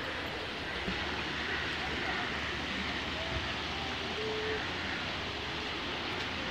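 Steady rush of flowing stream water, with faint distant voices under it.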